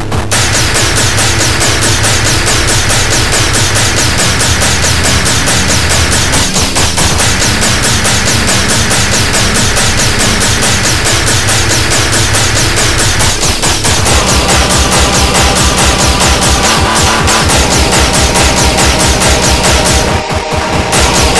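Speedcore track with a dense, rapid-fire run of hard kick drums under a bass line. About 14 seconds in, the bass drops back and a higher pitched melodic layer comes in over the drums.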